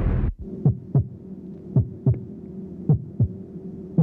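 Deep thumps in a heartbeat rhythm, a pair about every second, each dropping in pitch, over a low steady hum. Just after the start, a loud rushing noise cuts off.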